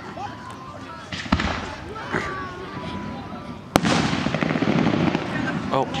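Aerial fireworks going off: a bang about a second in, a louder bang near four seconds, then a dense crackle for the last two seconds.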